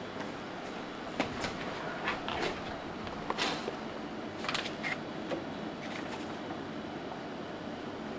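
Steady background noise with a scattered series of short clicks and taps, the busiest stretch a few seconds in.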